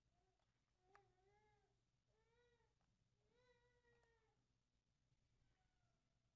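Near silence: quiet room tone with a low steady hum, through which three faint, drawn-out, high-pitched cries sound in the first four seconds, with a small click at the first of them.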